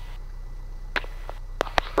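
Cessna 172's engine idling on the ground before the run-up: a steady low drone, with a few sharp clicks over it.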